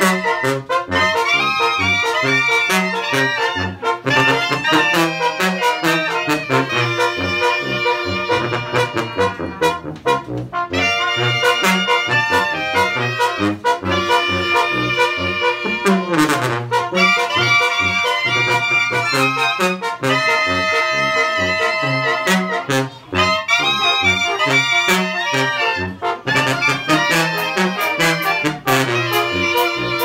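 Mexican banda playing a tune: clarinets and trumpets carry the melody over trombones, a sousaphone bass line and conga drums. About halfway through, a brass note slides down in pitch.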